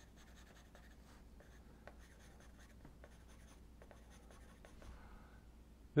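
Faint scratching of a charcoal pencil sketching on paper, with a few light ticks as the point touches down.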